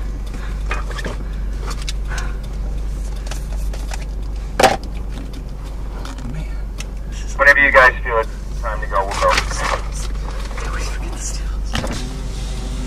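Steady low rumble of wind, with one sharp knock about four and a half seconds in. Short bursts of speech come over it from about seven and a half seconds.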